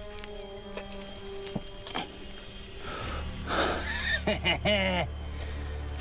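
Background music with sustained notes. About halfway through, a man breathes out hard and grunts with effort as he hauls on a twisted vine rope, with a few light knocks.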